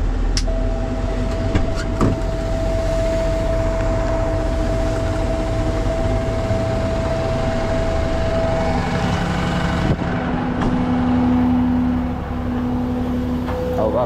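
Peterbilt rollback tow truck's diesel engine running under way, heard from inside the cab, with a steady whine over the engine for most of the time. About ten seconds in the sound changes to the engine running at a steadier, lower note.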